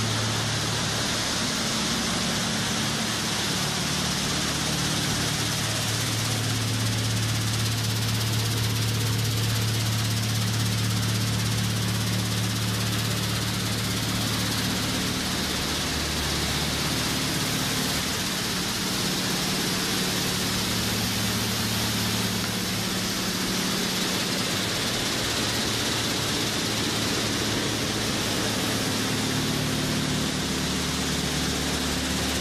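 Steady machinery noise: a low engine-like hum that shifts in pitch a few times, over a loud, even hiss.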